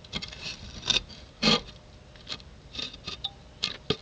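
Toy horse figurine being moved across a hard floor: several short, irregular scrapes and light taps, the loudest about one and a half seconds in.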